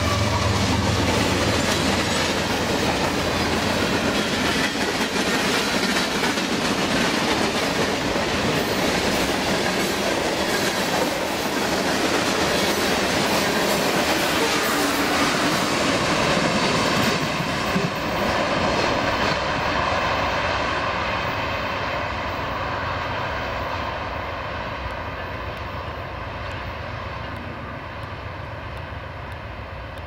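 Union Pacific freight train's cars rolling past at speed, a loud, steady rumble and clatter of steel wheels on the rails. It gets gradually quieter over the last dozen seconds.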